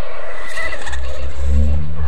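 A loud horror-style sound effect on the soundtrack, a deep rumble that swells in about half a second in, with a few low held tones above it.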